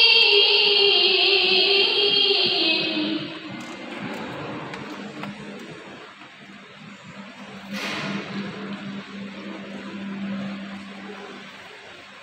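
A woman singing through the hall's loudspeakers, holding one long note that slides slowly down and fades out about three and a half seconds in. After that the hall is quieter, with a low steady hum and a single short knock near the eighth second.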